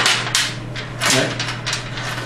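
Steel chain and locking pliers clinking and knocking as they are handled and set down on a wooden bench top, a few sharp knocks with the loudest about a third of a second in, over a steady low hum.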